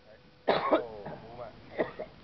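Loud cough-like vocal sounds from a person close to the microphone: one burst about half a second in that trails into a short voiced sound, and a second, shorter burst near the end.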